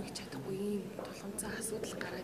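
Speech only: a woman speaking softly, in Mongolian, into a handheld interview microphone.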